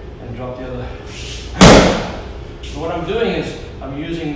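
A single hard punch landing on a handheld padded strike shield: one sharp, loud thud about a second and a half in.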